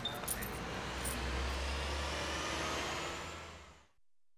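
A low, steady rumble with a hiss over it, after a few light clicks at the start. It fades out to silence just before the end.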